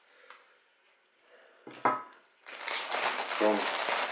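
A thin clear plastic bag crinkling loudly as it is handled, starting a little past halfway.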